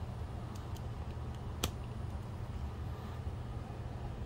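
Digital Projection dVision 30 XL DLP projector running as it warms up after power-on: its cooling fans and colour wheel make a steady hum and whir. A single sharp click sounds about one and a half seconds in.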